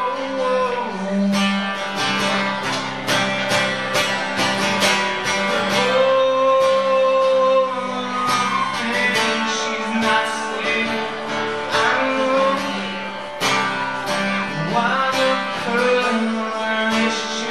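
A man singing a country song live while strumming a steel-string acoustic guitar, with long held sung notes over a steady strum.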